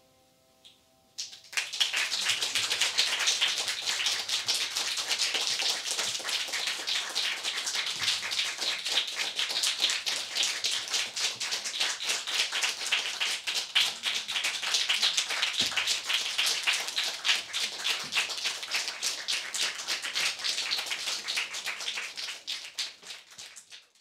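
A small audience applauding: dense, steady clapping that starts suddenly about a second in, just after the last piano note has died away, and thins out near the end.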